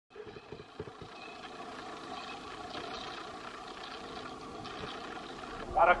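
Steady outdoor street ambience with a constant engine-like hum; a singing voice comes in right at the end.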